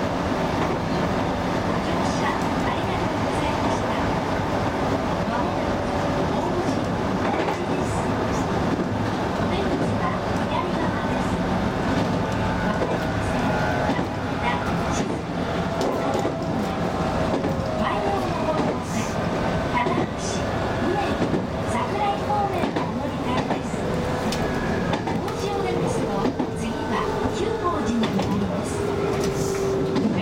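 Steady running hum of a stationary electric train, with scattered clicks and indistinct voices. Over the last several seconds a tone slides slowly downward in pitch.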